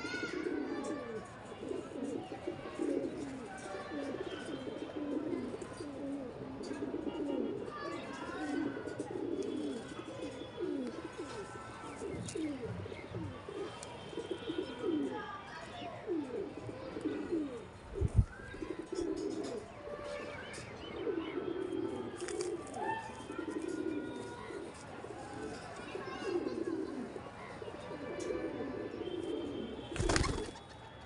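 Domestic pigeons cooing over and over in low, rolling, overlapping coos, with a few higher chirps. A single thump about eighteen seconds in, and a flutter of wings at the very end as a pigeon takes off.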